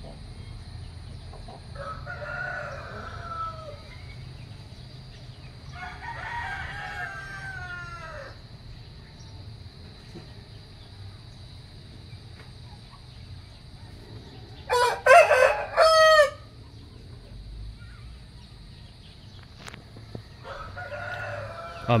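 Rooster crowing: two faint crows in the first eight seconds, then a much louder one about fifteen seconds in, lasting about a second and a half.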